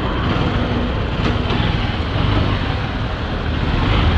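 Motorcycle running as it pulls away and rides along a street, with its engine under a steady rush of wind and road noise on the rider's action-camera microphone.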